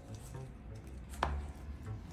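A single sharp knock about a second in, from a hard plastic Poké Ball toy being knocked against the floor as an otter plays with it, over faint background music.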